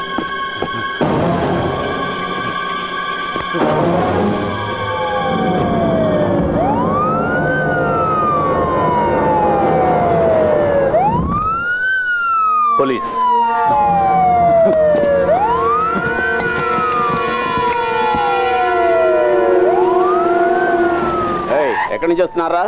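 A siren wailing, each cycle rising quickly and falling slowly, repeating about every four seconds from about five seconds in, over background film music. A single sharp hit sounds about thirteen seconds in.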